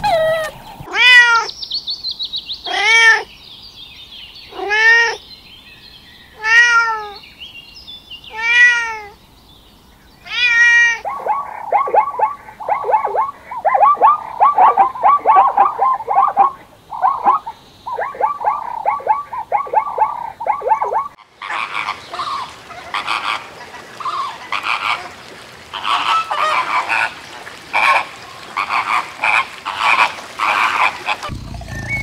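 Animal calls in three passages: a red fox giving six arching, pitched calls about two seconds apart; then plains zebras barking in a rapid run of short calls; then, from about 21 seconds in, a flock of flamingos in a dense, overlapping chatter.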